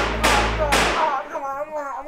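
A sharp hit at the start over a low bass drone that cuts off about a second in, followed by a wavering vocal sound.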